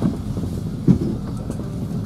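Low rumble of a moving road vehicle heard from inside the cabin, with a single short knock about a second in.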